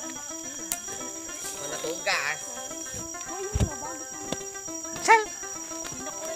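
Steady high-pitched insect buzz throughout. Held musical tones sit under it, and short voice calls come about two seconds in and, louder, about five seconds in.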